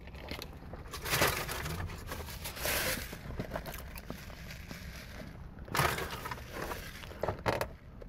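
Rustling, scraping and crinkling handling noise as a handheld phone camera is shifted about and paper food packaging is moved in a lap. Several louder bursts come about a second in, around three seconds and near six seconds, with a few short scrapes near the end.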